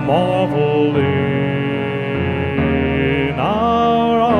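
A slow, tender hymn between sung phrases: the accompaniment holds sustained chords. A sung note slides and fades just after the start, and voices slide up into a new held note near the end.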